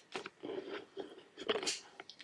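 A person biting into and chewing a freshly baked cookie with a crisp top and gooey middle: a few faint crunches and soft mouth noises.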